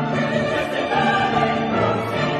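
Symphony orchestra playing classical music with choir voices singing over it.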